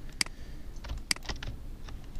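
Computer keyboard clicking: two sharp key presses about a second apart, with a few lighter clicks just after the second.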